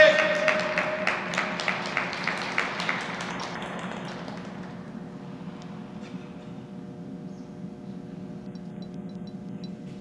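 Audience clapping and a cheering voice as the skater takes the ice, the claps fading out within the first few seconds. After that, arena room tone with a steady low hum.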